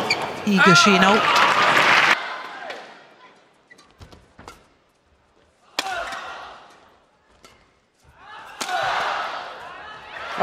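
Badminton doubles rally: a few sharp cracks of rackets hitting the shuttlecock, ending in a smash about eight and a half seconds in that sets off rising crowd noise. At the start, loud arena crowd and voices cut off suddenly at about two seconds.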